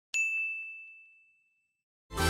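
A single notification-bell ding sound effect, struck once and ringing out as it fades over about a second and a half.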